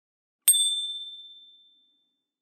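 A single bright, high bell-like chime sound effect struck about half a second in, ringing on and fading away over about a second and a half.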